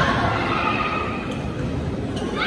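Athletic shoes squeaking on the gym court floor as players move, short rising squeals near the start over the background noise of the hall.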